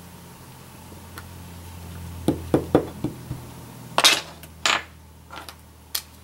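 Wooden-handled rubber stamp tapped on an ink pad and pressed onto paper on a tabletop: three quick light taps a little after two seconds in, then two longer, louder knocks around four seconds in.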